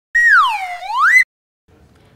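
A single whistle-like tone that swoops down in pitch and back up again, lasting about a second before cutting off suddenly.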